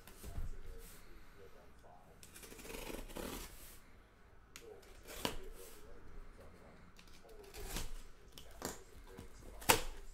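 Cardboard shipping case being handled and opened by hand: scraping and rustling of cardboard with a longer scrape about two and a half seconds in, and a few sharp knocks, the loudest near the end.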